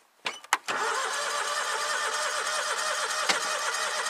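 Two clicks, then a John Deere Gator 6x4's engine cranking on its electric starter for about three and a half seconds and cutting off without catching: a cold engine tried before the choke is set.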